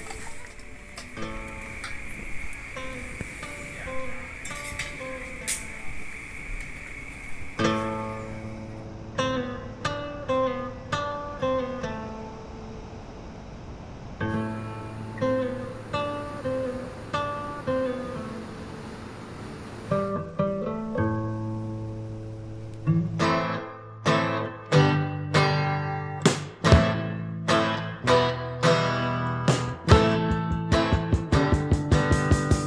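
Music: acoustic guitar picking a melody in separate plucked notes, growing fuller and louder with low notes from about two-thirds of the way through.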